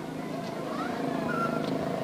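Many children's voices chattering and calling, with a vehicle engine running underneath that grows gradually louder.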